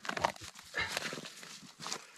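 Scuffing and crunching of snow and net mesh as a walleye is handled and worked out of a gillnet, in a few short bursts.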